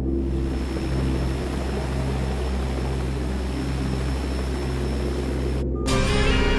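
Film soundtrack: a steady rushing, aircraft-like air noise over a low droning rumble. It cuts off abruptly just before the end, where a sharp hit and music come in.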